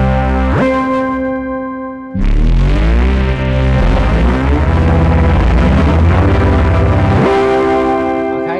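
Gritty, distorted 'Growler' patch on the SkyDust 3D software synth playing low held notes. Each note sweeps sharply up in pitch, two octaves, when the key is released: the pitch envelope's release is set to jump upward. This happens twice, about half a second in and again near the end, and each time the higher tone rings on briefly after the sweep.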